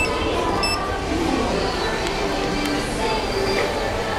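Two short, high beeps about 0.7 seconds apart from a Kone elevator's hall call button as it is pressed, over steady background music and chatter.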